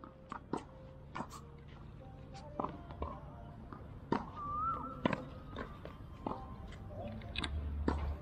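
Tennis rally on a hard court: a series of sharp pops as the balls are struck by rackets and bounce on the court, at irregular intervals. A short squeak comes about four seconds in.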